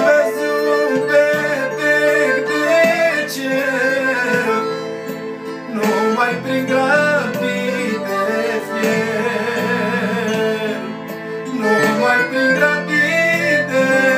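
Piano accordion playing a manele-style melody while a man sings over it, his voice wavering with vibrato.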